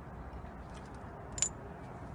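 A few faint clicks, then one short sharp click about one and a half seconds in, over a low steady background hum.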